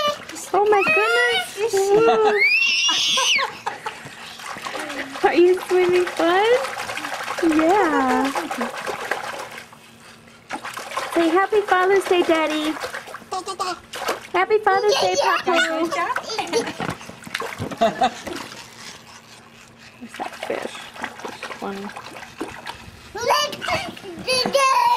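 Splashing and trickling water around a baby in an inflatable swim ring in shallow water, with the baby babbling and letting out a high rising squeal a few seconds in.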